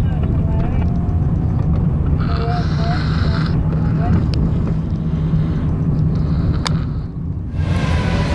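Road and engine noise inside a moving taxi's cabin: a steady low rumble with faint voices over it. Near the end it breaks off and gives way to a brighter indoor hubbub.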